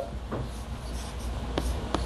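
Chalk writing on a blackboard: faint scratching strokes with a few short sharp taps of the chalk against the board, the clearest two near the end.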